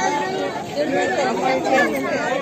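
Several people talking at once in a close crowd, a jumble of voices with no single speaker standing out.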